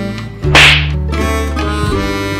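A single sharp slap-like hit about half a second in, the loudest sound here, fading quickly. It cuts into background music of guitar and harmonica, which drops out for a moment just before it.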